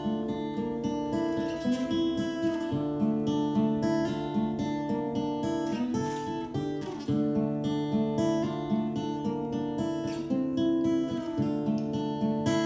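Cutaway acoustic guitar strummed in an instrumental passage of a song, with the chords changing about every four seconds.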